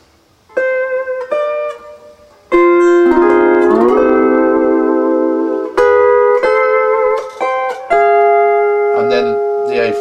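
Fender Stringmaster double-neck electric lap steel guitar played with a steel bar and finger picks: a few single picked notes, then from about two and a half seconds in, full chords that slide up into pitch and ring on. The chord changes twice more, near six and near eight seconds, the last one held.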